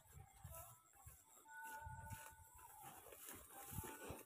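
Near silence: faint outdoor ambience, with a faint held tone for about a second near the middle.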